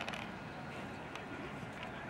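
Outdoor background noise with low, indistinct voices and a few faint clicks.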